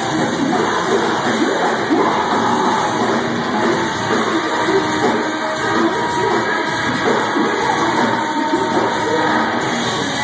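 Heavy live band playing loud through a club PA: distorted electric guitars, bass and drums, with a shouted vocal over the top, filling a large room.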